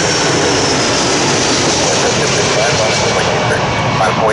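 A Boeing 747-400 passing low overhead on final approach: its four jet engines make a loud, steady noise with a high whine that slowly falls in pitch.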